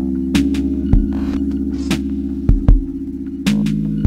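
Background electronic music: held synth chords over a steady low bass, with a few sharp drum hits.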